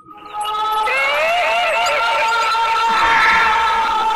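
Loud dramatic horror-film score sting. A sustained synthesizer drone chord comes in suddenly and holds, with a wavering, wailing tone sliding up and down over it.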